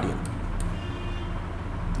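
Steady low background hum with a couple of faint clicks in the first second.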